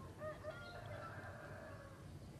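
Faint outdoor countryside ambience with a few short bird calls in about the first one and a half seconds.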